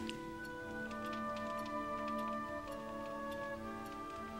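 Soft background score of slow, held notes, with faint, evenly spaced ticking underneath, about three ticks a second.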